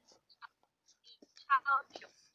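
Speech only: a voice in short broken snatches that cut in and out, with dead silence between them and the strongest syllables near the end.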